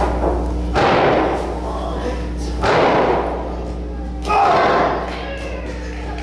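Three heavy hits in a wrestling ring, about two seconds apart, each with a short burst of crowd shouting.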